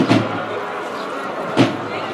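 Two sharp knocks about a second and a half apart, each with a short low ring, over the murmur of a crowd.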